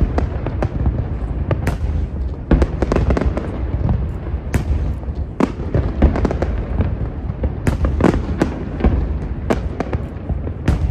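Fireworks display, with aerial shells bursting in quick, irregular succession: many sharp bangs over a continuous low rumble.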